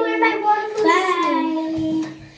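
A young girl's voice singing a drawn-out, sing-song phrase that ends on a long held note, cut off just before the end.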